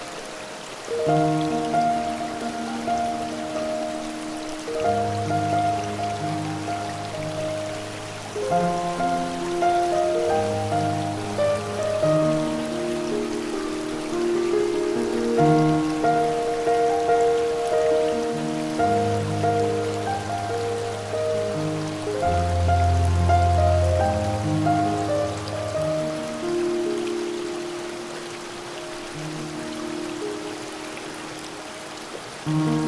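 Slow, gentle piano music with held notes and a low bass line, over a steady hiss of falling water from a waterfall.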